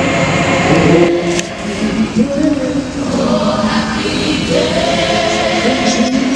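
Teen gospel choir singing, with long held notes that slide between pitches.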